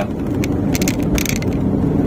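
Steady road rumble inside the cabin of a 2018 Honda Brio 1.2 driven fast over paving blocks, with a cluster of sharp knocks about halfway through: the stiff suspension thudding over the block joints, the harsh ride that shows at speed.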